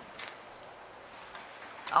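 Quiet room noise with faint, brief rustles of paper being handled at a table. A man's voice starts just at the end.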